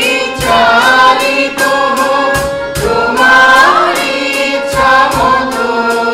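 Mixed choir of men and women singing a song together, accompanied by harmonium, acoustic guitar and a drum kit keeping a steady beat of about three strikes a second.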